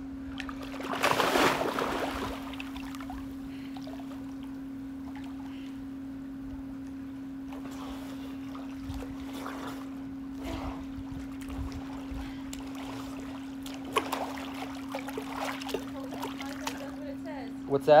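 Pool water splashing close to the microphone for about a second and a half, starting about a second in, then small splashes and lapping near the end, over a steady low hum.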